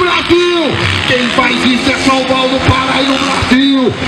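A man's voice announcing over public-address loudspeakers, with long drawn-out vowels.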